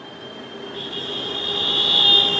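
Public-address microphone feedback: a steady high-pitched whine that swells steadily louder during a pause in speech.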